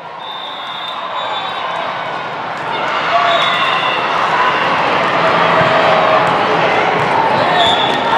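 Crowd of spectators and players shouting and calling during a volleyball rally in a large echoing hall. The noise builds over the first few seconds and then holds loud.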